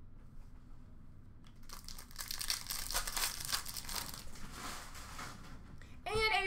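Trading-card pack wrapper crinkling and rustling as it is handled and opened, starting about a second and a half in and going on in rapid crackles until just before the end.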